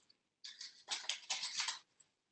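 Green construction paper rustling as hands roll a fringed strip into a tube: a run of short scratchy rustles starting about half a second in and stopping just before the end.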